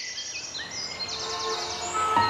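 Birds chirping over a faint background hiss: several short, high, up-and-down chirps, then a quick trill about a second in.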